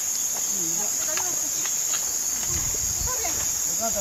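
Steady, high-pitched chorus of night insects, with faint voices of people in the background.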